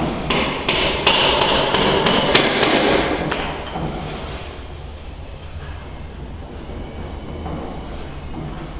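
A rapid run of hammer blows, about three a second, over the first three seconds or so. The blows then stop, leaving a low, steady background rumble.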